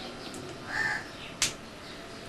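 A bird calls once, briefly, then a single sharp click follows about half a second later.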